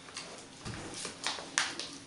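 Sticky glitter slime squeezed and worked in the hands, making irregular squishy clicks and pops, with one soft low thump a little after halfway.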